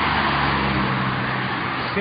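Street traffic noise: a loud, even rushing sound with the steady low hum of a nearby motor vehicle engine, which fades near the end.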